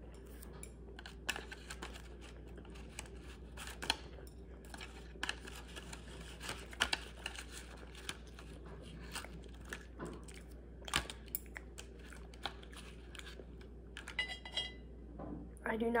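Chopsticks tapping and scraping against a plastic candy tray: scattered light clicks and small rustles at irregular intervals, over a faint steady low hum.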